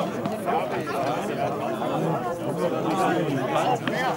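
Several people's voices talking over one another in a steady chatter, with no single clear voice standing out.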